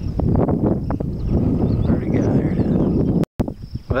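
Loud low rumble of wind and handling noise on a camcorder microphone while moving outdoors, with some faint, indistinct speech. The sound drops out abruptly about three seconds in, at an edit.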